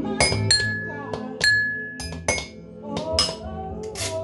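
Kitchen utensils played as makeshift percussion: spoons, a spatula and a metal grater struck against a glass pot lid in irregular clinks and clanks. One strike leaves a ringing tone that lasts more than a second. Background music plays underneath.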